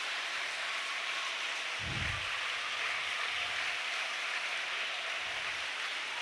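Steady, even hiss with no speech, and a brief low thump about two seconds in.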